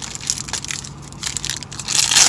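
Plastic protein-bar wrapper crinkling and crackling in a dense, irregular run as the Bulletproof fudge brownie bar is opened and handled.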